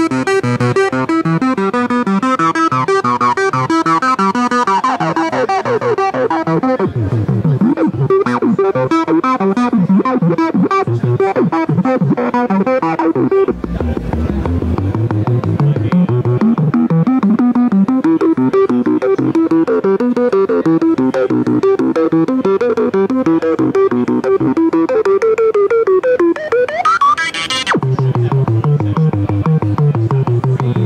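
Studio Electronics Boomstar 700 analog synthesizer playing a fast, repeating run of notes while its filter knobs are turned by hand. Sweeping glides come about five seconds in, and a sharp rising filter sweep comes near the end.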